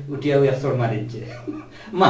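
A man chuckling amid men's conversation.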